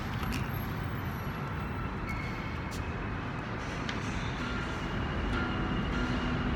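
Steady low rumble with a few faint plucked guitar notes near the end.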